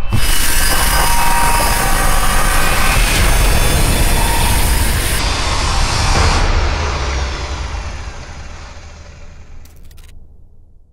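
Angle grinder grinding steel, a loud, steady grinding noise that fades away over the last three seconds or so.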